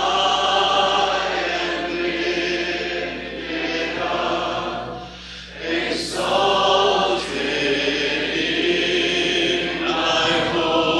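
A choir singing a slow worship song in a live church recording. The voices fall away briefly between phrases about five seconds in, then come back.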